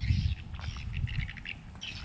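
Birds chirping: a scattering of short, high calls.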